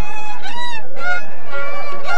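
High-pitched voices singing a festival copla in long, bending notes, with a violin.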